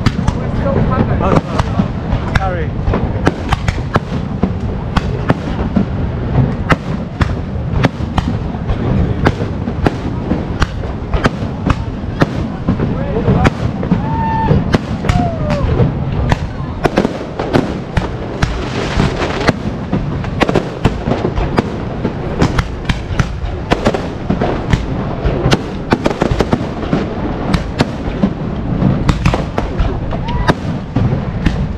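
Fireworks going off close by, a continuous run of sharp bangs and crackles several times a second, with a denser burst of crackling a little past the middle.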